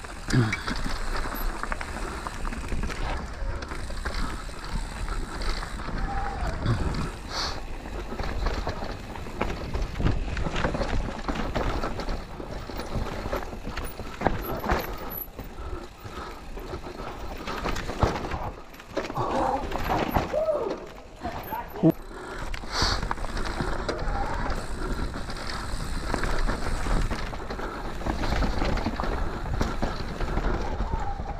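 Mountain bike ridden fast down a dirt-and-rock trail, heard from a camera on the bike or rider: a steady rumble of wind on the microphone and tyres rolling over dirt and roots, with frequent knocks and rattles as the bike hits rocks and bumps.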